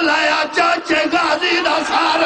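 A man's voice chanting a mournful recitation in long, bending, melodic notes into a microphone, with no pause.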